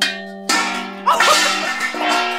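Makeshift quiz gong, a metal pan or bowl struck with a stick, hit twice about half a second apart, the second strike louder, each ringing on like a bell.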